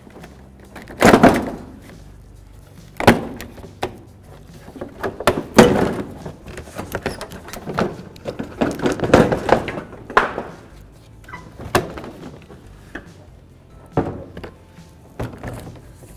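Plastic front bumper cover of a Honda Accord being pulled off by hand: a string of irregular thunks and cracks as its clips pop free of the body and the cover knocks against the car, with plastic rustling in between.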